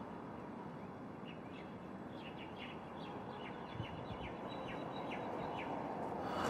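Birds chirping: a run of short, quick chirps over a low, steady outdoor background.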